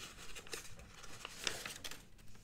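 Sheets of printed paper rustling quietly as they are leafed through and turned over, with brief louder rustles about half a second and one and a half seconds in.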